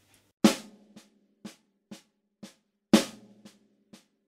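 Snare drum played slowly with drumsticks: a double paradiddle pattern of eight even strokes, about two a second (right-left-right-right, left-right-left-left). The first and sixth strokes are loud accents, the accent of the second group moved off its first note onto the right-hand stroke, and the rest are quiet taps.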